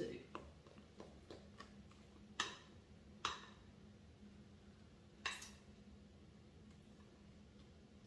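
A spatula scraping and tapping against a glass mixing bowl as thick creamy pie filling is pushed out into a crust. It makes a few soft clicks at first, then three sharper taps spread through the middle, over a faint steady hum.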